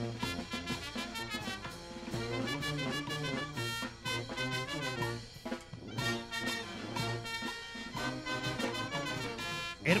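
Brass band playing festive music with drums, a steady rhythmic tune with horns carrying the melody.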